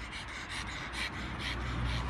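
Pug panting hard with its tongue out, quick noisy breaths about four a second.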